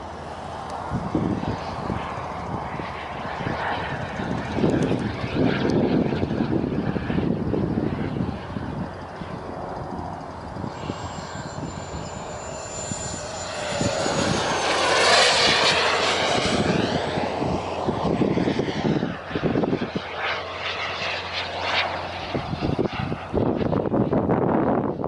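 Jet aircraft flying passes, with a steady turbine rush that swells to its loudest about 15 seconds in. A high whistle falls in pitch as the jet goes by.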